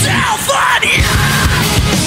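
A live nu-metal band playing loud distorted guitars and drums under a screamed lead vocal.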